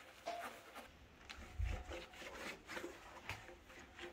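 Faint rubbing and handling noises as a plastic tail-light lens is wiped with a sponge and cloth, with a soft low thump about a second and a half in.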